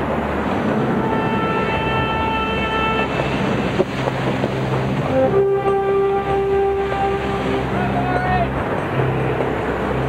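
Steady wind and rushing sea noise on a sailboat under way in rough water. Long held notes sound over it, a short one about a second in and a longer, stronger one about halfway through.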